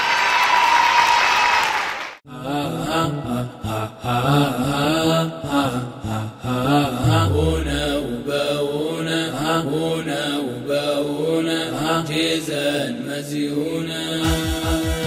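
Chanted folk-song vocals over a steady low drone, with the melody rising and falling phrase by phrase. They follow a loud, noisy passage that cuts off sharply about two seconds in.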